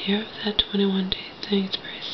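A woman's voice speaking softly and indistinctly, mumbled words that are not made out.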